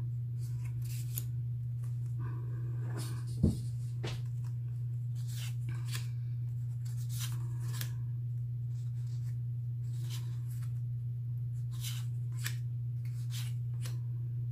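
Cardstock cards being flipped through by hand: a run of short papery rustles and slides, with a single sharper knock about three and a half seconds in. A steady low hum runs underneath.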